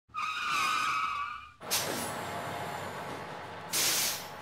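Vehicle sound effect: a wavering high squeal for about a second and a half, then a sudden burst of hissing that settles into a steady hiss, with a second short, loud hiss near the end.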